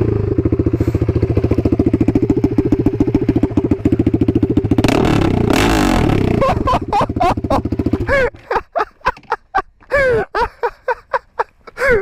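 Husqvarna motorcycle's single-cylinder engine running loud with a rapid, even exhaust beat, through an aftermarket silencer that has worked loose. A brief rush of noise rises over it about five seconds in. About eight seconds in, the steady running stops, leaving short irregular sounds.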